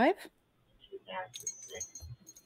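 Faint, brief metallic clinking and jingling of small metal pieces with a thin high ring, starting about a second in, alongside a faint murmur.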